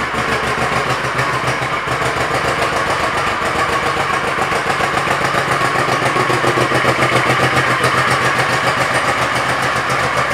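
A 2000 Honda Shadow Sabre's V-twin engine idling steadily through its chrome exhaust, with an even pulse of firing strokes and no revving.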